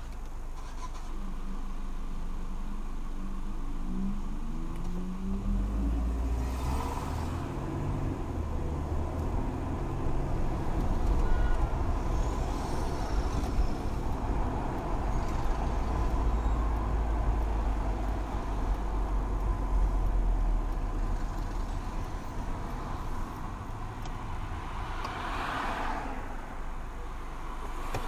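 Mercedes-Benz car's engine and road noise heard from inside the cabin, with a steady low rumble. The engine note rises as the car pulls away and speeds up a few seconds in, then the car runs on through traffic and slows almost to a stop near the end.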